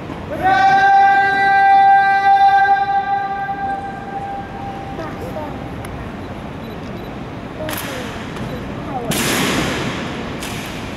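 A drill command for the honor guard called out in one long drawn-out note: it slides up at the start, holds a steady pitch for about four seconds and fades. Two short rushes of noise follow near the end.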